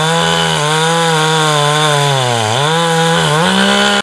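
Chainsaw cutting into the base of a red oak trunk at high revs, its engine pitch sagging briefly twice as the chain loads in the wood and then recovering. The sound cuts off suddenly at the end.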